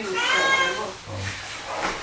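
A cat meowing once, a drawn-out meow of under a second that rises slightly and falls in pitch.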